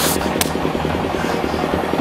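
A vehicle engine running steadily at idle, with a brief click just under half a second in.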